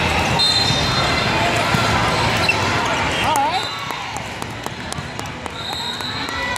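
Indoor volleyball match in a large hall: players and spectators calling and shouting over one another, with scattered sharp ball hits and bounces. A short shrill whistle sounds about half a second in and again near the end, and the noise eases a little after the middle.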